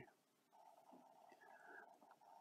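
Near silence: faint room tone between spoken remarks.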